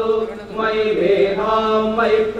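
Male voices chanting Vedic hymns in Sanskrit together on a steady held pitch, with a brief dip about half a second in before the chant resumes.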